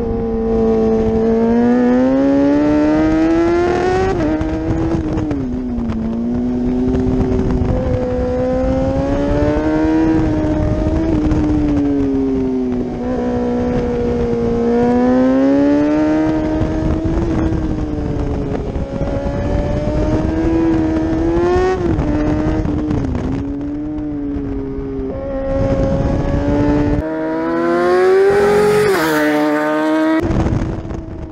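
Kawasaki ZX-10R's inline-four engine at high revs through a run of curves, its note climbing under throttle and dropping at each shift or roll-off, with wind rush on the tail-mounted camera. Near the end, without the wind, a motorcycle is heard from the roadside, its note climbing to a peak as it passes.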